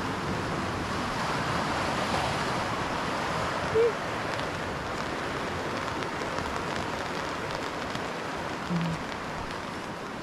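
Shallow creek running steadily over a riffle, a continuous rush of water, in light rain. Two brief pitched blips break through it, about four and nine seconds in.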